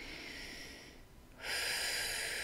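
A woman taking slow, deep breaths to relax: a soft breath at the start, then a louder, longer breath from about one and a half seconds in.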